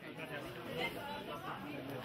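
Indistinct chatter of several people talking at once in a busy room, with no single clear voice.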